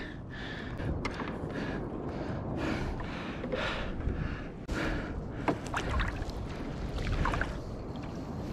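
Water splashing and swishing against a kayak in a series of soft swishes, with a few light knocks on the hull and gear.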